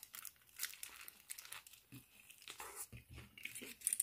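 Faint, irregular crinkling of an aluminium foil wrapper as a toasted döner kebab wrap held in it is bitten into and chewed.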